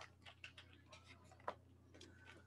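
Near silence: a few faint ticks of a stylus on a tablet screen as a brace is written, one a little louder about one and a half seconds in, over a faint low hum.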